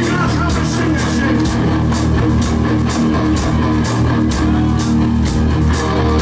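Live rock band playing a groove: a drum kit keeping a steady beat under bass and electric guitar, heard loud from the audience.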